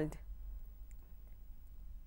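A pause between spoken sentences: a low steady hum and faint background hiss, with a couple of faint clicks near the middle.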